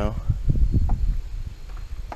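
Wind buffeting the camera microphone: an uneven low rumble with irregular gusting thumps.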